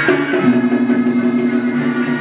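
Vietnamese ritual ensemble music: drum and wood-block strokes over held steady notes that come in about half a second in.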